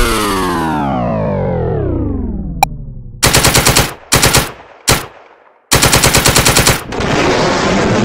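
A dubbed-in weapon sound effect for a toy War Machine figure's gun. A falling whine slides down over about three seconds, then comes machine-gun fire in four bursts of very fast shots, two long and two short. Near the end a loud noisy rush sets in.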